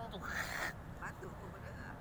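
A short breathy vocal sound, then faint voices in the distance over a steady low background rumble.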